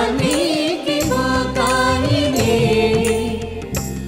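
Music: a devotional Sanskrit hymn to Bharati (Saraswati) sung in a chant-like melody over sustained instrumental accompaniment, with long drawn-out, gliding vocal notes.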